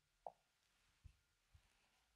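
Near silence with room tone, broken by a short, faint pop about a quarter second in and a few soft, low footsteps on a stage floor.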